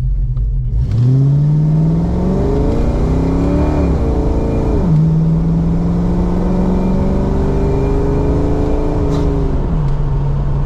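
Ford 5.0 V8 in a fox body Mustang accelerating hard from a pull-out, heard from inside the cabin: the engine note climbs for about three seconds, drops sharply as the AOD automatic upshifts, then climbs more slowly before dropping again near the end. A sluggish launch, which the driver calls a total dog out of the hole.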